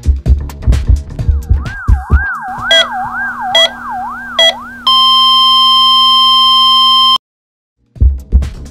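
Dance music with a heavy beat stops, and a wailing emergency siren rises and falls about twice a second over a low hum. Three evenly spaced heart-monitor beeps follow, then a loud, steady flatline tone, sound effects that signal a patient's heart stopping. The tone cuts off abruptly into silence.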